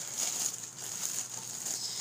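A bag rustling as an item is pulled out of it by hand.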